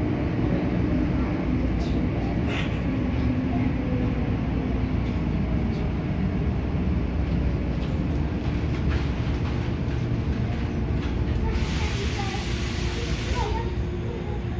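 Tokyo Metro Namboku Line subway train heard from inside the car: a steady rumble of wheels and running gear in the tunnel as it slows into a station. A hiss lasting about two seconds comes near the end.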